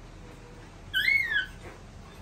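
Baby monkey giving one short high call about a second in, its pitch rising and then falling over about half a second.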